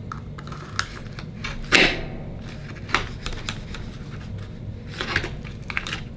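Oyster knife prying and working into the shell of an akoya pearl oyster: irregular clicks and short scrapes of the steel blade against shell, the loudest scrape a little under two seconds in.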